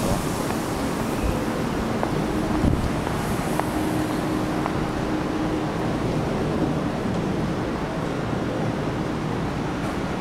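Steady background noise of a railway station platform, with a faint steady hum from about three and a half to six seconds in.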